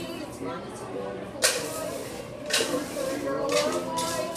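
Indistinct voices in a room, with a sharp burst of noise about a second and a half in, the loudest sound, and a few softer hissy bursts after it.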